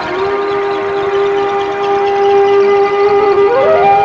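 Film background score: a long held flute note, then a quick upward run to a higher held note near the end.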